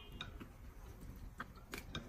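Faint, sparse clicks of chopsticks against porcelain bowls while two people eat, a few light ticks scattered through an otherwise quiet stretch.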